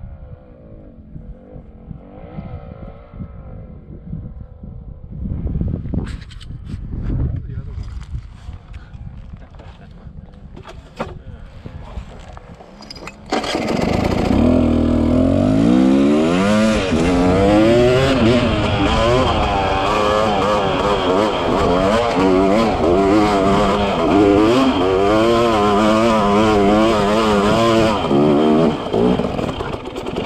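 Off-road motorcycle engine under load on a hill climb. It is low at first, then about thirteen seconds in it turns suddenly loud, its pitch rising and falling over and over as the throttle is worked.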